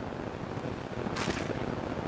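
Steady low outdoor background noise, with one short, high, scratchy hiss a little over a second in.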